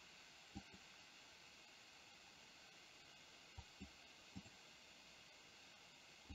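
Near silence: faint room hiss with a few very faint, brief soft ticks.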